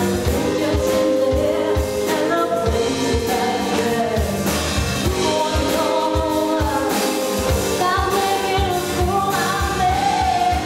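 Live pop-soul band playing: a woman sings lead with harmony vocals over acoustic guitar, electric bass and drum kit, with a steady beat.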